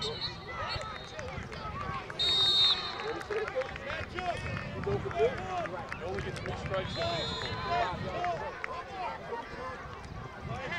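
Several voices of players and sideline spectators calling out at once across an outdoor field. Short, steady high whistle tones cut through them: a faint one at the start, a loud one about two seconds in, and another around seven seconds in.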